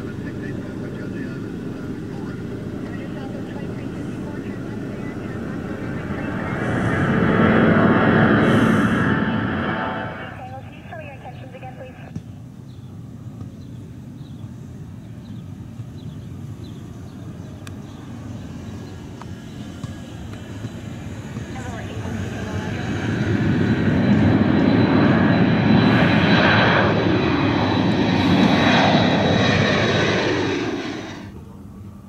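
Turbofan engines of twin-jet airliners at takeoff power: an Airbus A320-family jet, then a Boeing 737. The first swells to a loud roar and cuts off abruptly about ten seconds in. After a quieter stretch the second builds from about twenty-two seconds and stays loud to the end.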